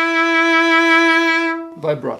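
A violin holding one long bowed note, vibrato developing in it as the stroke goes on, to show vibrato as an intensifying of the sound. The note stops just before the end.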